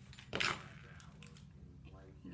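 A plastic box of sewing pins set down on a cutting mat: a short clatter of pins about half a second in, then a few faint light clicks as the pinning goes on.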